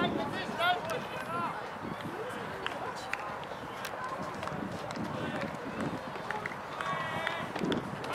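Distant, high-pitched voices of players calling out across an open football field in short shouts, with one longer held call near the end, over steady outdoor background noise.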